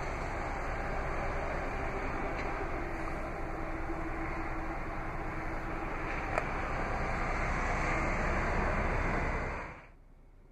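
Steady background noise with a faint hum in the first half and one light click about six seconds in, fading out just before the end.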